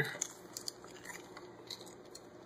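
Faint rustling and a few soft crackles and taps of paper and cardboard packaging as a product-registration booklet is lifted out of a camera box.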